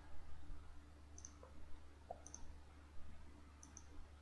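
Faint computer mouse button clicks, a few short press-and-release double clicks, as the on-screen pen markings are cleared. A faint steady low hum runs underneath.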